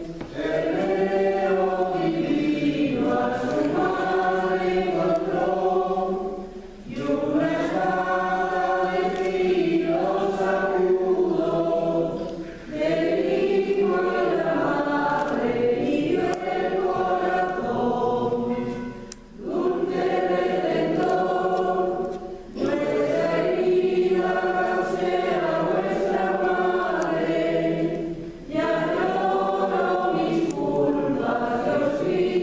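A choir singing a slow piece in long phrases, with brief pauses between them five times.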